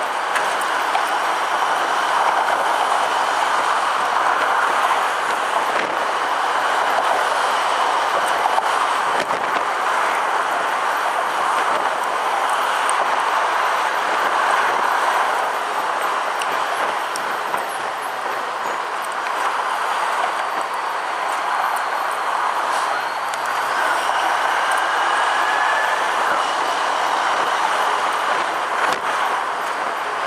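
Steady rushing road and wind noise heard from an open-air fire engine on the move: its engine, tyres and the surrounding traffic blend into one constant roar.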